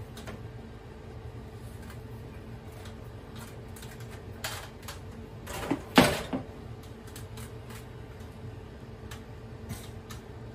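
Plastic clicks and knocks as the front casing of a wall-mounted Daikin air conditioner is unclipped and pulled off, with a cluster of louder knocks about six seconds in, over a faint steady hum.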